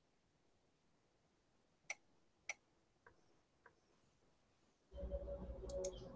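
Four faint computer mouse clicks about half a second apart, the first two louder, then a steady hum with a low drone from about five seconds in, as the microphone comes live.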